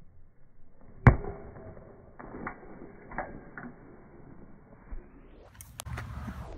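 A bat striking a baseball off a batting tee: one sharp crack about a second in, followed by a few fainter knocks.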